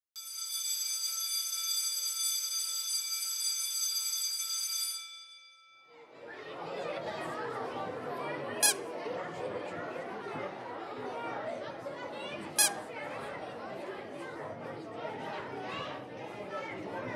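A school bell rings steadily for about five seconds and cuts off. Then comes the chatter of children in a classroom, broken twice, about nine and thirteen seconds in, by the sharp squeak of a plastic squeaky toy hammer.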